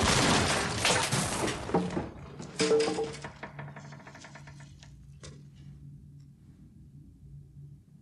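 A door forced open with a sudden loud crash and clattering debris, a few further knocks and a short creak about three seconds in, then the noise fades to a low steady hum.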